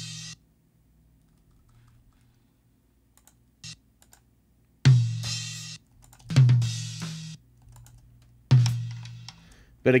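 Isolated tom-tom hits from a multitracked drum kit playing back: three sharp strikes about a second or two apart, each ringing low with crash cymbal bleed hissing above it. Each hit is cut off abruptly, because strip silence has left the tom clips without fades.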